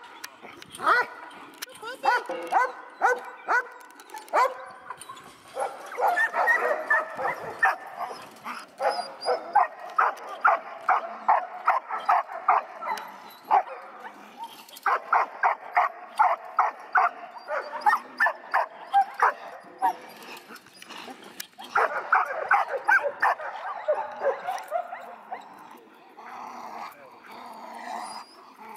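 A dog barking in rapid runs of about three to four barks a second, five bouts with short pauses between them.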